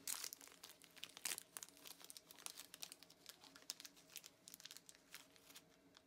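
Plastic packaging crinkling as it is handled, a faint, irregular run of rustles and crackles that stops shortly before the end.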